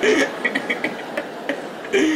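A man laughing in short, breathy snickers over a comedy audience's laughter as it dies down.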